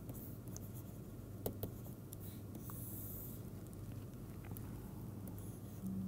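Stylus scratching across a pen tablet in short strokes, with a couple of light taps about a second and a half in. A faint, steady low hum runs underneath.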